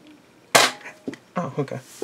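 Nerf Rival D.Va blaster, a spring-powered foam-ball blaster, firing a single sharp shot about half a second in, fired into a hand at close range; it fires pretty hard.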